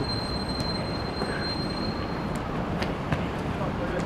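Futsal ball being kicked on an artificial-turf court: a few short, sharp kick taps, the clearest near the end, over steady rumbling city background noise. A thin, steady high-pitched whine runs through the first two and a half seconds and then stops.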